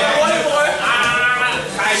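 Men's voices shouting from the mat side, with one long held shout about halfway through and a shouted "yes" at the end.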